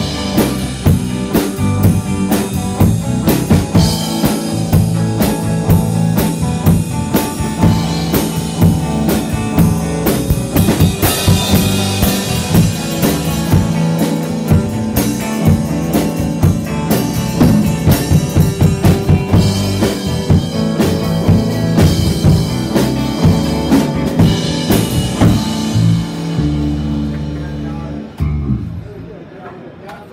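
Live rock band, electric guitar, bass guitar and drum kit, playing an instrumental passage with steady, prominent drum hits and a heavy bass line. Near the end the band holds a few long low notes and then stops, and the sound drops to a much quieter room.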